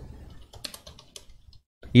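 Typing on a computer keyboard: a quick run of about a dozen light key clicks starting about half a second in and lasting about a second.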